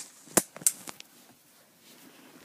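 Two sharp clicks or knocks about a third of a second apart, followed by a couple of fainter ticks.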